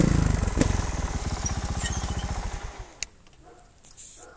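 Trials motorcycle's single-cylinder engine running at idle, with a brief blip at the start, then slowing and stopping about two and a half seconds in. A single click follows about half a second later.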